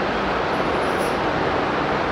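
Steady room noise in a pause between spoken phrases: an even hiss and rumble with no distinct events.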